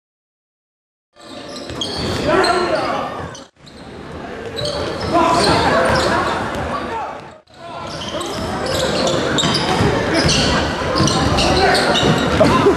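Silent for about the first second, then a basketball game in a gym: the ball bouncing on the hardwood court among spectators' voices and shouts, in a large echoing hall. The sound cuts out briefly twice where clips are joined.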